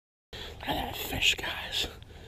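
A brief dead silence at an edit cut, then indistinct, low, breathy speech.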